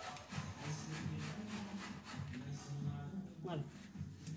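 Faint rustling and rubbing of hands plucking herb leaves from their stems over a steel bowl.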